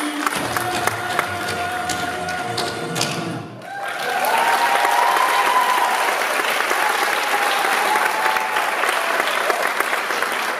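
A song's backing music holds a final note and ends about three and a half seconds in. An audience then applauds loudly for the rest.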